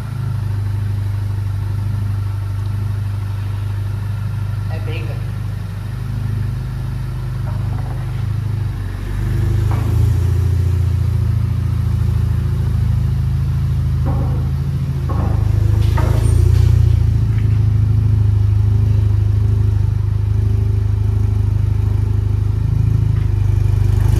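Volkswagen Jetta TSI's turbocharged 2.0 four-cylinder engine running at low revs with a steady, loud exhaust drone as the car is driven slowly onto a lift. The engine swells briefly twice, with a light touch of throttle. The exhaust still has its 2.5-inch carbon-steel downpipe.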